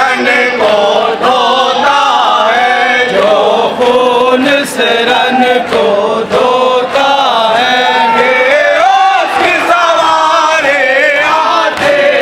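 A group of men chanting a noha, a Shia mourning lament, in unison into microphones, led by an older male reciter. The melody rises and falls in long, continuous phrases.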